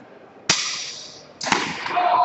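Two sharp clashes of steel longsword blades, about a second apart, each ringing out briefly after the strike.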